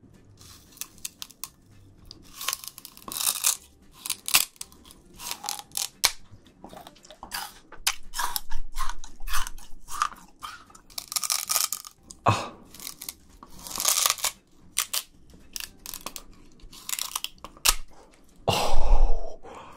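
Close-miked biting and chewing of peeled raw sugar cane: the fibrous stalk crunches and tears between the teeth in irregular bursts of crackling, with short pauses between bites.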